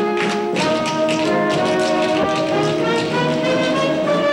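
A pit band plays a brassy, up-tempo show tune, with the sharp, rapid taps of tap dancers on the stage boards over it. Picked up from a theatre balcony by a single camera microphone, so it sounds distant and roomy.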